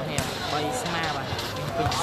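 A volleyball being struck: one sharp knock just after the start and a couple of fainter knocks later, over the voices of spectators talking.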